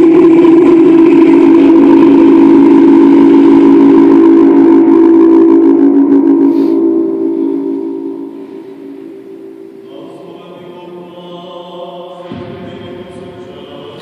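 Byzantine-rite liturgical chant: a loud sustained sung chord that fades away about seven to eight seconds in, then a quieter group of voices holding a chord from about ten seconds, with a lower voice joining near the end.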